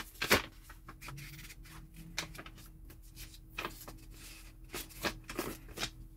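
Paper leaflets and a thin card insert rustling and shuffling in the hands, in scattered short crinkles and light taps.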